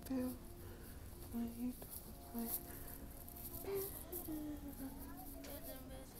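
Faint, indistinct speech with short held pitched stretches, over low background noise.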